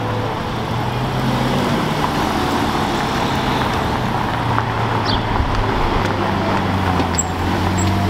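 Lamborghini Aventador's V12 running at low revs as the car rolls slowly up the street, over a steady wash of city traffic noise.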